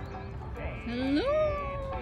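A single high voice glides up and then holds a long, slowly falling "ooh" or "whee" for about a second, starting about halfway in.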